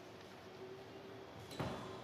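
Quiet room tone with a faint steady hum, broken by a single sharp knock about one and a half seconds in.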